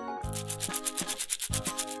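A quick run of scratchy rubbing strokes, about a dozen a second, played as a cartoon sound effect over children's background music with a steady bass line.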